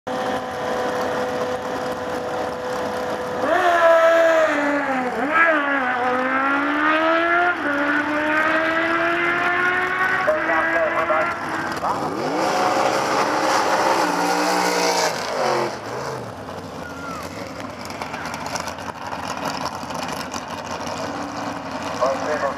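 Drag racing cars' engines idling at the starting line, then revving up and down for several seconds. About 12 seconds in they launch: the engine note rises sharply, then drops away and fades as the cars run down the strip.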